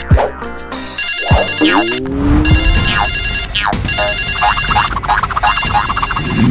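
A mobile phone ringtone of high, rapidly repeated electronic beeps plays over background music. Several quick downward-sliding swoops are heard over it.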